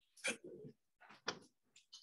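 Office chairs creaking and knocking as people sit back down at meeting tables: a few separate short knocks and creaks, the loudest about a quarter second in and just over a second in.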